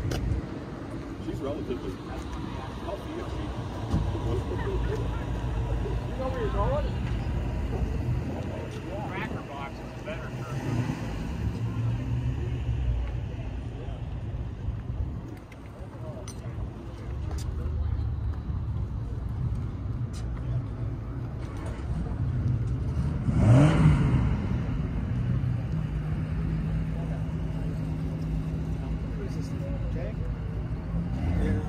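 Car-show crowd chatter over a steady low engine rumble. About three-quarters of the way through, an engine revs briefly; it is the loudest sound. A steady low idle hum follows it.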